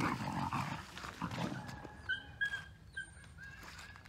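Two dogs play-fighting, with rough growling and scuffling for the first second and a half, then several short high squeaks.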